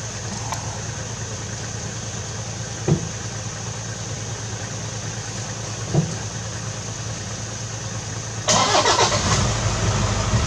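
Safari vehicle's engine running steadily at idle, with two short knocks. About eight and a half seconds in, the sound gets suddenly louder and rougher as the vehicle moves off along the dirt road.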